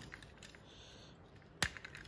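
Small plastic parts of a toy robot kit being handled and pressed together, with faint rubbing and one sharp plastic click about one and a half seconds in as a lock piece is pushed into place.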